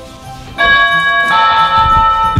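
Doorbell chiming two notes, a high one about half a second in and then a lower one, each ringing on. Quiet background music plays underneath.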